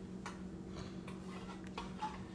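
A few light, irregular clicks over a faint steady low hum.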